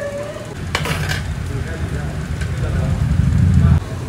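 Marinated chicken pieces being handled in a large metal pot, with a couple of sharp metal clicks about a second in as the skewers knock against the pot. Underneath runs a low rumble that grows louder and cuts off suddenly near the end.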